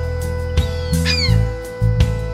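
Background music of held low notes, with a single high, cat-like gull call about a second in.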